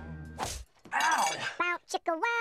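Trailer soundtrack: background music stops just after a sudden crash about a quarter of the way in. High-pitched, sped-up chipmunk voices follow near the end.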